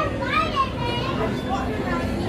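Crowd chatter with high-pitched children's voices calling out over a steady background of people.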